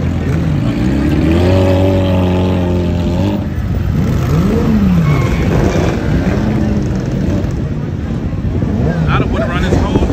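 Sport motorcycle engines idling together, one held at a raised rev for about two seconds near the start, then short throttle blips that rise and fall in pitch every second or so, with people talking in the crowd.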